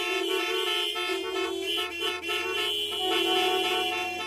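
Several car horns honking together in a traffic jam: long, overlapping blasts at different pitches.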